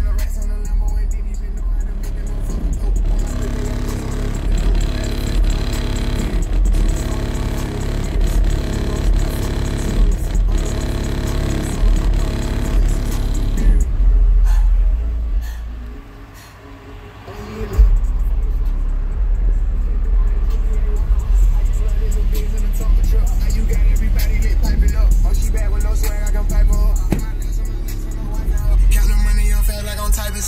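Hip hop track with vocals played loud through a pickup's car audio system, two DB Drive WDX G5 10-inch subwoofers on a Rockford Fosgate 1500bdcp amplifier at 2 ohms, with the deep bass heavily dominant, heard from outside the truck. About halfway through the bass drops out for a second or two, then comes back in with a hit.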